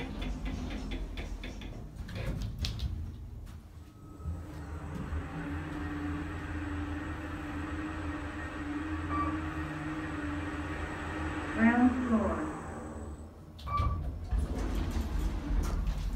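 Kone traction elevator car travelling down: a steady motor hum with a thin high whine for about nine seconds that stops as the car arrives. Doors knock shut near the start and click open near the end.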